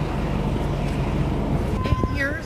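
Street traffic noise: a steady low rumble of vehicles. Near the end comes a sharp click, then a short steady beep.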